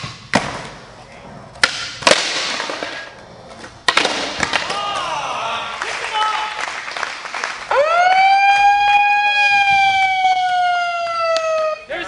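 Skateboard on a concrete floor: several sharp cracks of the tail popping and the board landing in the first four seconds, with voices in between. Then a loud whistle blast of about four seconds that swoops up and slowly sinks in pitch.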